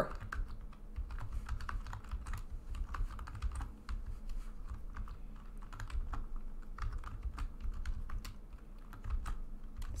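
Typing on a computer keyboard: a long run of quick, uneven keystrokes.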